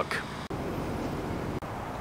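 Steady outdoor background noise with the hum of distant road traffic, briefly dipping about half a second in.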